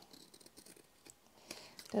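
Scissors cutting through the glued, still-wet paper edge of a layered paper tag, trimming off the excess: faint snipping, with a couple of sharper snips in the second half.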